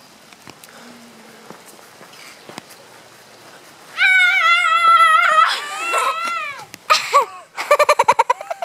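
A young girl's loud, high-pitched screech, held and wavering for over a second starting about halfway, then breaking into shorter rising-and-falling cries and a choppy yell near the end. Before it there is only a faint hiss.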